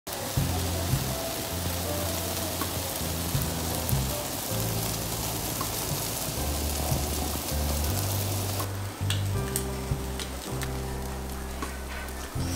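Monjayaki of cabbage and batter sizzling on a hot teppan griddle, a steady hiss under background music. The sizzle cuts off abruptly about three-quarters of the way in, leaving only the music.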